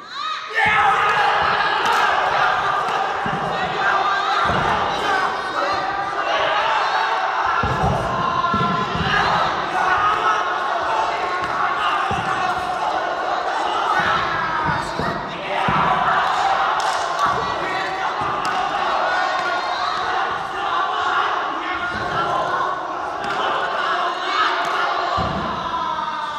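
Nanquan duilian fighters stamping, striking and landing hard on the wushu competition carpet: irregular heavy thuds, some in quick runs, with occasional sharp fighting shouts. All of it sits over the steady noise of a crowd in a large hall.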